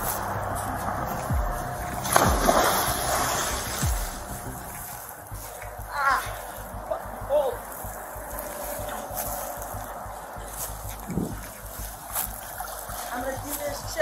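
Water splashing and sloshing in a backyard swimming pool as a person moves in it, with the rustle and thumps of a body-worn camera as its wearer walks. The splashing and rustle are loudest about two seconds in.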